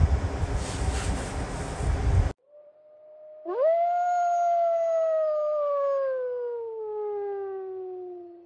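The tail of the keyboard music and room noise, cut off abruptly a little over two seconds in. Then a single long howl starts as a soft steady note, jumps up sharply about three and a half seconds in, and slides slowly downward in pitch.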